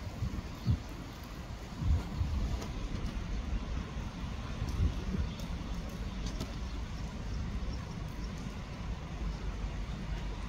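Outdoor background rumble, low and steady, broken by a few dull thumps about a second in, around two seconds in and near the middle.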